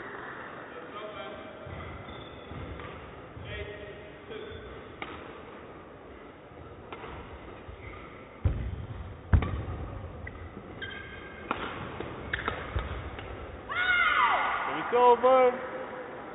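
A badminton rally: sharp racket hits on the shuttlecock and heavy footfalls of lunges on the court floor, with the loudest thuds about halfway through. Near the end comes a loud shout from a player as the rally ends.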